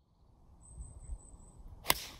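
A golf tee shot: the club head strikes the ball with a single sharp crack just before the end, over a low background rumble.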